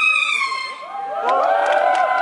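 Dance track playing through a PA ends under a second in, then audience members shout and cheer, with clapping starting near the end.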